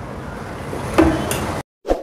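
A sharp knock about a second in, then a second lighter click, as something is set down or shifted on the worktable while the pattern paper is handled; the sound then cuts off abruptly to silence, with one short blip near the end.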